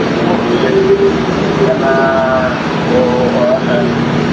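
A person's voice speaking in short, drawn-out phrases over steady background noise with a constant low hum.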